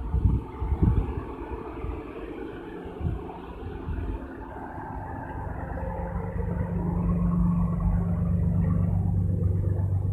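A vehicle engine idling with a steady hum that grows louder through the second half, under low rumble and a few knocks in the first second.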